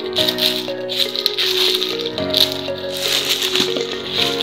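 Clear plastic bag rustling and crinkling in irregular bursts as puppies paw and nose at it, over background music of held notes and chords.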